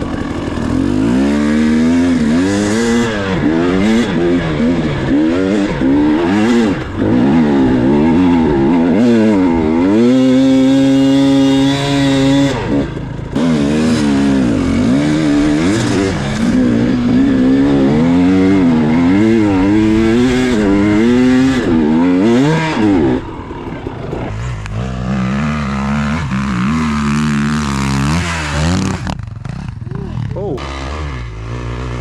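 Dirt bike engine being ridden, its pitch rising and falling over and over as the throttle is opened and closed. About ten seconds in it climbs and holds high for a couple of seconds, and from about three quarters of the way through it runs lower and quieter.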